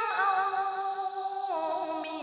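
A woman singing a song, holding long notes with vibrato that step down in pitch, once at the start and again about a second and a half in.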